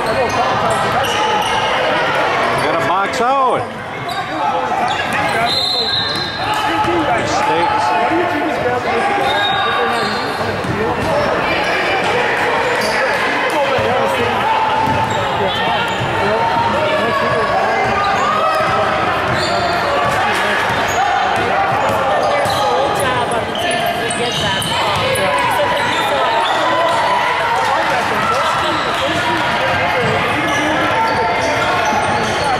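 Basketball game in a large gym: a ball bouncing on the hardwood court amid continuous, unintelligible chatter and shouts from players and spectators.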